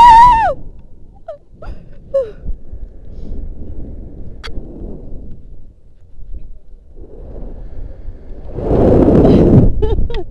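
Wind rushing over a body-worn camera's microphone in swelling and fading waves as a rope jumper swings on the rope after the drop, loudest near the end. A woman's high, wavering cry opens it, followed by a few short squeaks.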